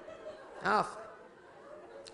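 A man's voice giving one short exclamation, "Ah," its pitch rising then falling, over faint steady background noise.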